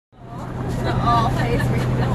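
Steady low hum of an idling bus engine heard from inside the bus, with voices calling out over it; the sound fades in over the first half second.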